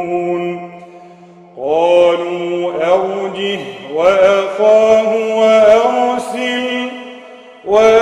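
A man reciting the Quran solo in melodic tajweed style, holding long drawn-out notes. One phrase tails off about a second in, a new phrase begins with a rising note after a short breath at about a second and a half, and another starts just before the end.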